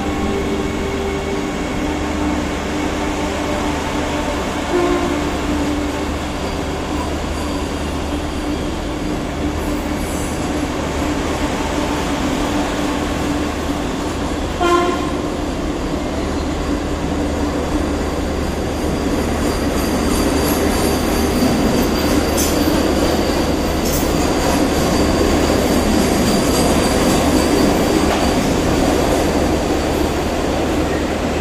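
Vande Bharat Express electric trainset rolling along a station platform: a steady rumble of wheels on rail with a motor hum, growing louder over the last ten seconds. A short, sharp metallic sound comes about fifteen seconds in.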